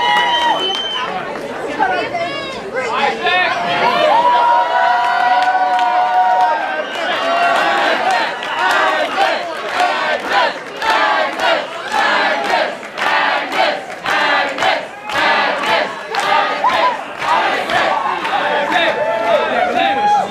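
Audience cheering and yelling, with long whoops and shouts from many voices. From about eight seconds in, sharp handclaps are mixed into the cheers.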